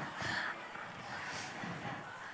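Quiet pause in a large hall: faint murmur and rustle from a seated audience over room noise, with no distinct event.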